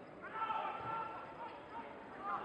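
A man's long shout carrying across a football pitch, with a dull thud about halfway through that fits a football being kicked.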